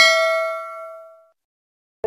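Notification-bell 'ding' sound effect from an animated subscribe button, a bright chime of several ringing tones fading out over about a second.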